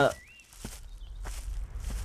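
Footsteps of a person walking away: about three steps, roughly two-thirds of a second apart, over a low rumble that grows louder.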